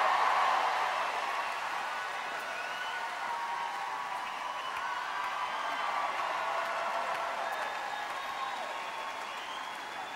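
Large crowd applauding and cheering, loudest at the start and slowly easing off.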